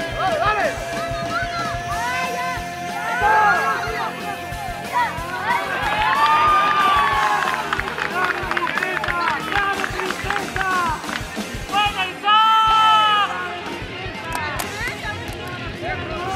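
Players' shouting voices on a football pitch mixed with background music, with a loud held call a little past the three-quarter mark.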